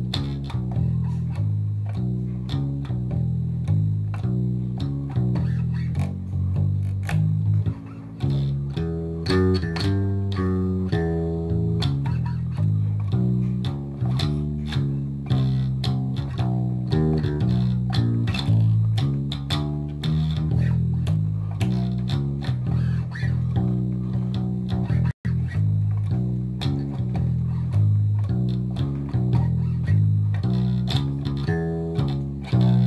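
Electric bass guitar playing a slow, relaxed blues walking bass line: a steady stream of plucked low notes stepping from pitch to pitch.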